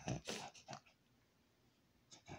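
A man crying quietly: a few short whimpering sobs and breaths in the first second.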